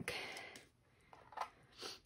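A person's breath: a noisy exhale trailing off after speech, then quiet with a faint tap, and a short intake of breath near the end.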